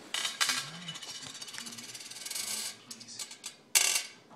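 Scratchy rustling with small clicks, then near the end a short, sharp clink of small stones on a glass tabletop.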